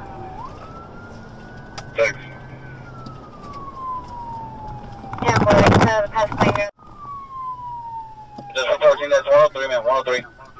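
Police patrol car siren on a slow wail, rising near the start, then gliding down over a few seconds, with a second falling sweep after about seven seconds, over steady engine and road noise. A loud burst of voice comes about five seconds in and more voice near the end.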